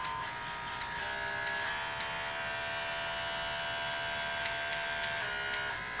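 Cordless five-speed pet grooming clipper running with a steady motor buzz. Its pitch steps up in clicks through the speed settings in the first two seconds, holds steady, then steps back down near the end.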